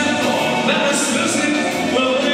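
Live band playing loud dance music with singing: accordion, keyboard and drums, with cymbal hits cutting through.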